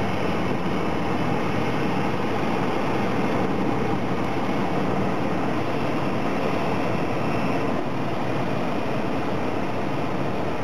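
Cessna 172SP's four-cylinder piston engine and propeller droning steadily, heard inside the cabin together with the rush of airflow.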